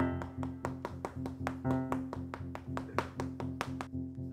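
Background music: a steady low sustained tone under a quick, even ticking beat of about five ticks a second, opening with a louder hit.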